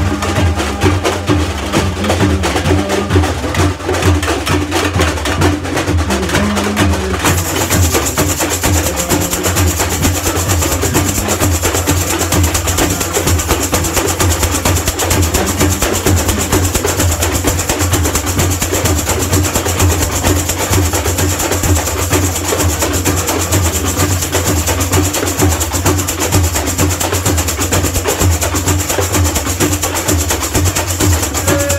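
Samba percussion section playing a steady samba groove, led by many metal shakers (chocalhos) rattling together over a low drum beat. The high rattle grows fuller about seven seconds in.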